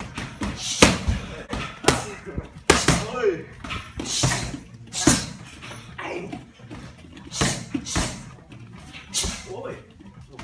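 Muay Thai strikes (gloved punches and knees) landing on Thai pads held by a trainer: a series of sharp smacks roughly a second apart, with short vocal calls between them.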